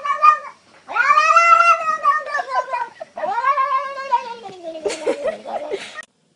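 A cat yowling: a short call, then two long drawn-out calls of about two seconds each that rise and then fall away, the last one sinking lower as it fades.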